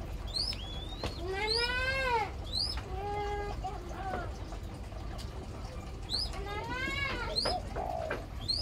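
Several birds calling: two long, arching calls about a second each, one early and one late, a short steady call in between, and short high rising chirps repeated every couple of seconds.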